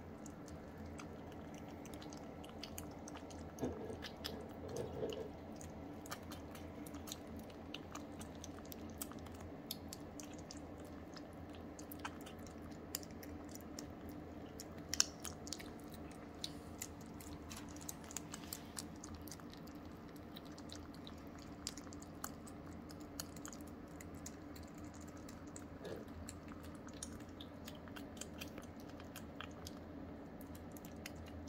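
Two young kittens eating soft weaning food from bowls: irregular wet smacking and chewing clicks over a steady low room hum.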